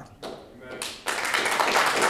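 Audience applause breaking out about a second in after a brief lull, a steady wash of many hands clapping.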